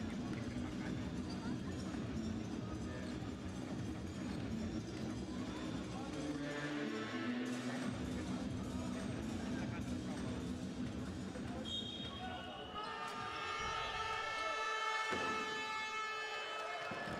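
Basketball arena ambience at a low level: crowd murmur and distant voices, with a basketball bouncing on the court. Near the end, steady held tones, like music, come in.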